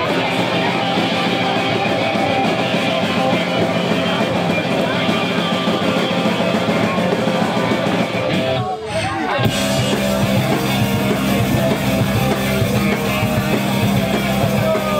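Hardcore punk band playing live, loud and dense with guitar and drums. About nine seconds in the music breaks off for a moment, then the full band comes back in with much more bass.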